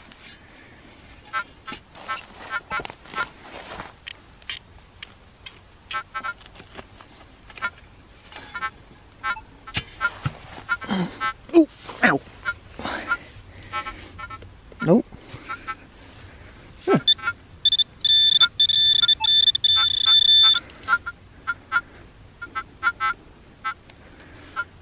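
Handheld metal-detecting pinpointer beeping over a target in the dug hole. It gives rows of short rapid electronic beeps, then holds a steady high tone for about three seconds in the second half. Short scrapes and clicks of hands working the dry soil run under it.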